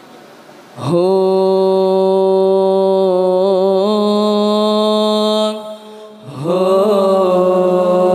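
Solo male vocalist singing unaccompanied Arabic devotional verse into a microphone, as the hadroh banjari lead voice. About a second in he holds one long note, with a wavering ornament in the middle. It breaks off after about five seconds, and a second long held note follows.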